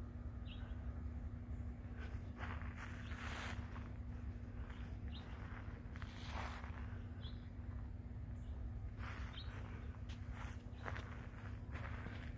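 Faint footsteps of a person walking across frozen ground dusted with snow, irregular steps roughly once a second, over a steady low rumble.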